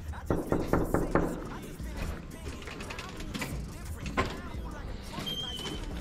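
Knocking on an apartment door: a quick series of raps about half a second in, then another knock about four seconds in.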